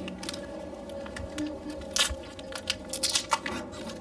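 Plastic packaging and flag fabric being handled and unwrapped, crinkling and rustling with many irregular sharp clicks.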